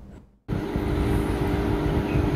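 A brief silence, then a steady low rumble with a faint hum of background noise.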